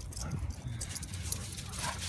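Dogs running on sand and grass: a scatter of quick, light paw patters and scuffs over a steady low rumble.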